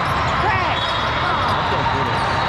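Din of a busy indoor volleyball hall: sneakers squeaking on the court floors and balls bouncing, over the chatter of many voices.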